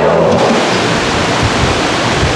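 A loud, steady hiss of noise, like rushing water or static, with no pitch or rhythm to it.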